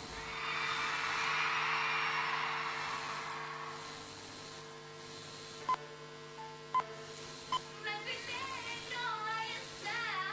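A concert crowd's cheering dying away over a low steady hum, then three short beeps about a second apart from a film-leader countdown. Near the end a girl starts singing, heard through a home-video recording.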